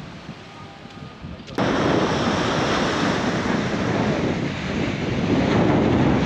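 Loud wind noise on the microphone mixed with sea surf. It cuts in abruptly about a second and a half in, after a quieter stretch of background noise.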